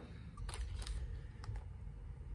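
A few faint, light clicks and handling noises of small carburetor parts being picked up and moved on a work mat, over a low background rumble.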